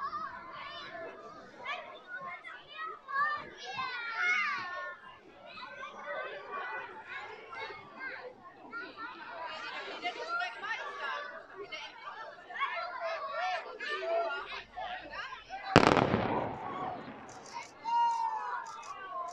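Crowd of onlookers chattering, then near the end a single sharp bang from the demolition charges at the base of an industrial chimney, ringing on for about a second.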